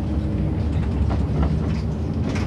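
Bus running, heard from inside the passenger cabin: a steady low rumble with a few faint knocks and rattles.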